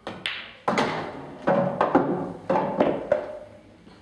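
A pool shot: the cue tip strikes the cue ball, the cue ball clicks into a red, and the potted red drops into a pocket, followed by a run of hollow thuds and knocks over the next couple of seconds as it falls and rolls inside the table.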